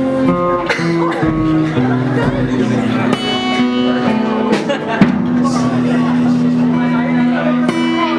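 Cutaway acoustic guitar played live, chords and single notes ringing out and held for a second or more at a time.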